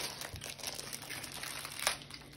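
Faint rustling and crinkling, dotted with small clicks, with a sharper click near the end.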